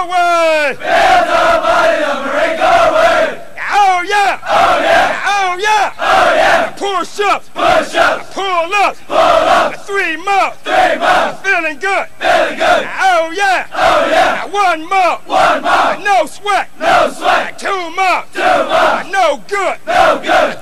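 A group of Marine recruits shouting a military running cadence in unison, a steady rhythm of about two loud shouted syllables a second.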